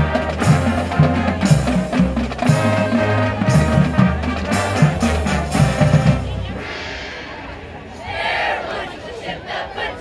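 Marching band of brass, woodwinds and drumline playing, with sustained low brass under regular drum hits; the music stops about two-thirds of the way through. A burst of cheering voices follows near the end.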